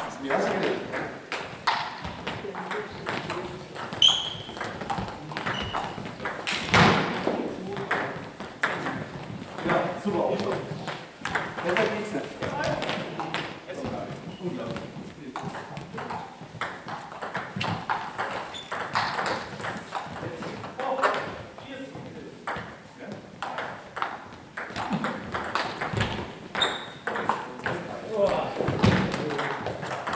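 Table tennis balls clicking against bats and tables, many quick irregular ticks from play in the hall, with voices talking.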